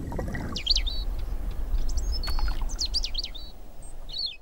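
Small birds chirping in three short bursts of quick, high, up-and-down notes, over a steady low outdoor rumble.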